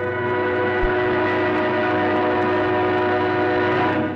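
Orchestral film score ending on one long held chord, with brass prominent.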